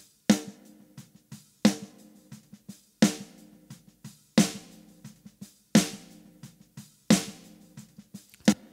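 Recorded drum kit played back from a mix, led by a snare drum hit about every 1.4 s on the backbeat, with lighter kick and hi-hat hits between. The original snare is being auditioned while a sampled snare is blended in to make it crispier and punchier.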